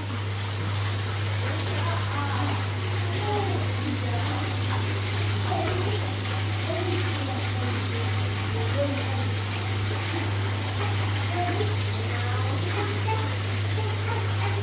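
Steady rush and bubbling of water churned by aeration in a koi pond's multi-chamber filter, with a low steady hum underneath.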